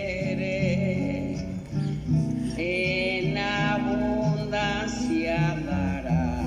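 A song with acoustic guitar accompaniment: a singing voice holds long, wavering notes over a steady repeating guitar bass pattern.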